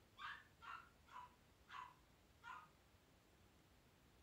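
A dog barking five times in quick succession, faint short barks.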